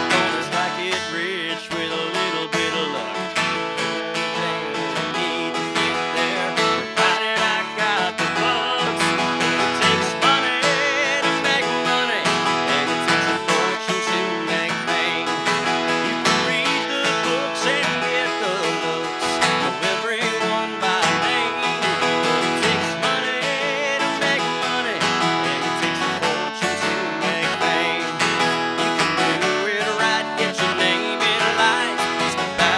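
Steadily strummed acoustic guitar with a man singing along in a solo singer-songwriter performance.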